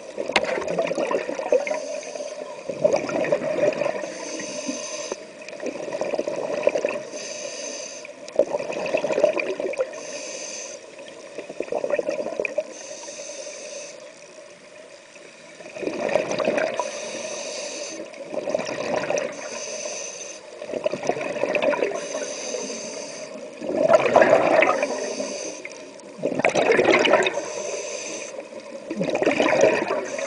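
Scuba regulator breathing recorded underwater: a soft hiss as the diver inhales through the demand valve, then a burst of gurgling exhaust bubbles as they breathe out, repeating about every three seconds.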